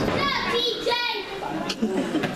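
A small audience shouting and calling out, children's high voices the most prominent, with a single sharp slap about a second and a half in.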